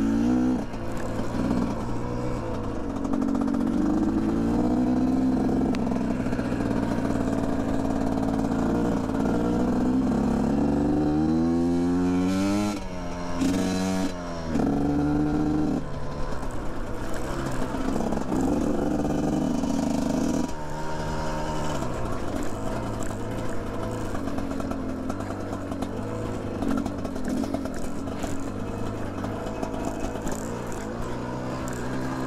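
GPX Moto TSE250R dirt bike's 250 cc single-cylinder engine, fitted with a FISCH spark arrestor, running under load as the bike is ridden, revs rising and falling with the throttle. About twelve seconds in the revs drop sharply and climb back twice, and around twenty seconds they fall away to a lower, steadier pull.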